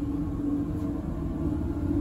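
Steady low rumble of laboratory room noise with a steady hum held through it.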